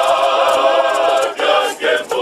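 A men's choir singing together, the voices holding long notes in harmony, with a short dip about a second and a half in and a brief break near the end.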